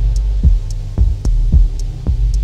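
Dub techno: a steady four-on-the-floor kick drum a little under two beats a second over a deep, sustained bass drone, with a short high hi-hat tick between each pair of kicks.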